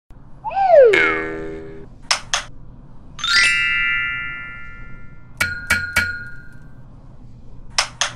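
Short sound-effect sting for an animated logo: a falling pitched swoop into a held tone, two quick clicks, a ringing chime that swells and holds, then three sharp clicks about a third of a second apart that leave ringing tones, and one last click near the end.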